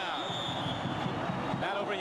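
Voices on a television football broadcast over a steady background din.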